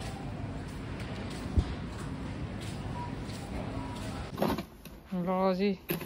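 Steady supermarket background noise with faint distant voices, and a single knock about a second and a half in. Near the end it gives way to a brief scraping sound and a person's voice.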